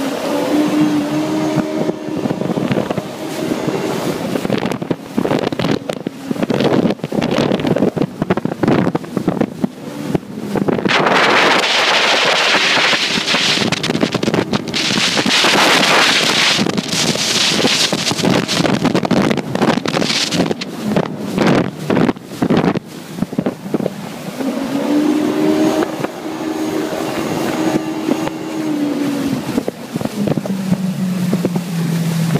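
Yamaha WaveRunner FX High Output personal watercraft running under way, its four-stroke engine tone shifting up and down in pitch as it turns. Through the middle, at speed, loud wind buffeting on the microphone and rushing spray largely cover the engine, which is plain again near the end.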